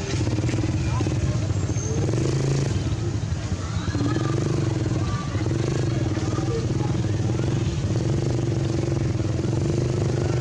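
A motor vehicle engine running steadily at a low, even pitch, with people's voices in the background.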